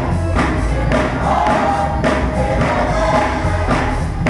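Gospel choir singing with band accompaniment: held voices over a deep bass line, with a steady beat about twice a second.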